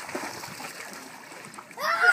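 Pool water splashing as a child swims, then near the end a child's loud, high shout.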